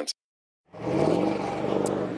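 A moment of dead silence at an edit, then a motor vehicle on the road: steady engine and tyre noise that comes in about two-thirds of a second in.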